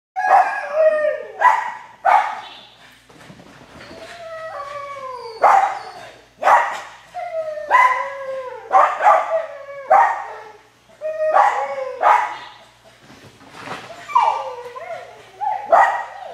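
A small dog barking excitedly and repeatedly while running an agility course, sharp barks roughly one a second, many of them dropping in pitch.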